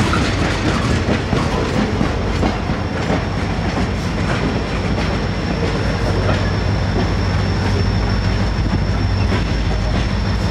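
Loaded gondola cars rolling slowly past, with steady rail noise and wheel clicks over the rail joints. From about six seconds in, the EMD SD40-2's 16-cylinder two-stroke diesel grows louder as the locomotive, shoving the train from the rear, draws near, and a thin high whine sets in.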